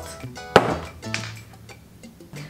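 A glass jar full of sewing clips knocked down onto a wooden tabletop: one sharp knock about half a second in and a lighter knock a little after the one-second mark, over faint background music.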